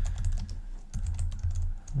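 Typing on a computer keyboard: a quick, uneven run of key clicks, several a second, as a line of text is entered, over a steady low hum.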